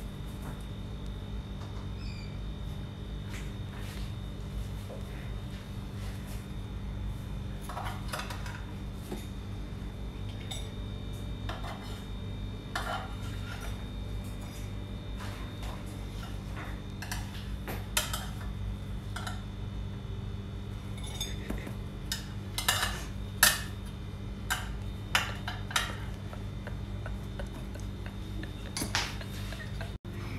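Intermittent clinks and scrapes of a utensil against a sandwich maker's plates and a ceramic dinner plate as toasted sandwiches are lifted out, over a steady low hum. The clinks come more often and louder in the second half.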